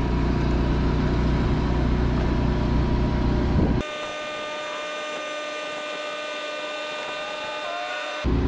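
Electric motor of a power patio awning running as the awning rolls out, a steady mechanical hum. About four seconds in the sound drops suddenly to a quieter, higher steady whine.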